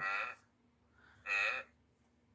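Electronic sound chip of a touch-and-feel board book playing a recorded wildebeest grunt, set off by pressing the furry patch on the wildebeest page; the short grunt sounds twice, once at the start and again just over a second later.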